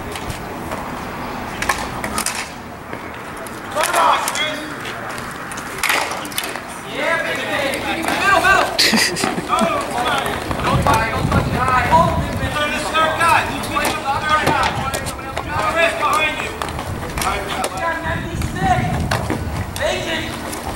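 Dek hockey play: sticks clacking on the ball and the plastic rink surface, with scattered sharp knocks, under spectators' chatter.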